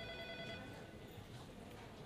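Faint telephone ringing tone, a steady chord of high tones that stops about a second in, leaving quiet room tone.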